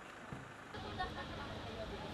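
Faint background voices over a low outdoor rumble, which steps up abruptly about three quarters of a second in.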